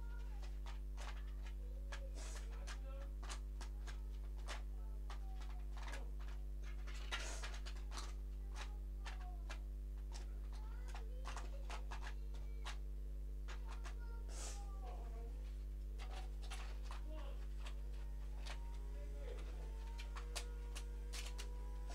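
A steady low hum runs throughout, with scattered faint clicks and a few faint, distant gliding calls now and then.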